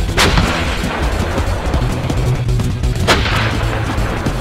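K9 Thunder self-propelled howitzer's 155 mm gun firing twice, about three seconds apart. Each shot is a sudden blast followed by a long rolling echo, over background music.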